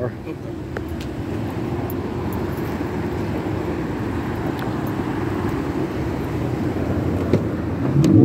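Steady vehicle noise with a low, even engine hum and a few faint clicks.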